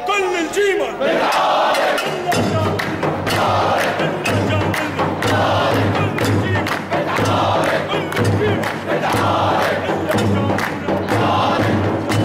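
A crowd of men chanting a traditional Homsi arada with handclaps. A single voice leads at the start, then the crowd repeats a short chanted phrase about every two seconds.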